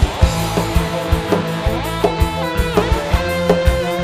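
Campursari band playing an instrumental passage through a PA system: a lead melody with bent, sliding notes over a bass line and steady drum beats, with no singing.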